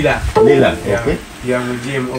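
Speech only: a man talking in an interview.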